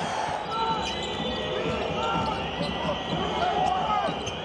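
Arena crowd noise during a basketball game, with a ball bouncing on the court and a few short squeaks.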